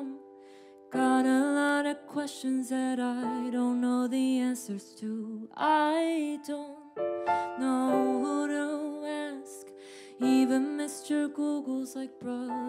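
A woman singing a slow melody while accompanying herself with piano chords on a Roland electronic keyboard, with short pauses between sung phrases.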